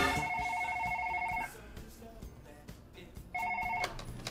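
Telephone ringing with a fast-pulsing electronic ring: one ring of about a second and a half, a pause, then a second, shorter ring that breaks off near the end.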